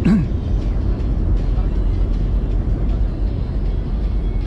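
Steady low background rumble with no clear events, with a short voice right at the start.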